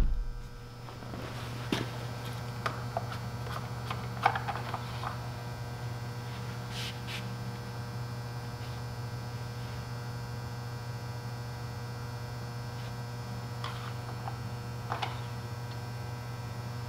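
Steady low electrical hum, with a few faint clicks and rag rustles as the mower's engine dipstick is pulled out of its tube and wiped during an oil check with the engine off.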